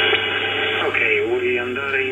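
A voice received on single sideband coming out of a Kenwood TS-590 transceiver's speaker, narrow and cut off in the treble, over a steady low hum.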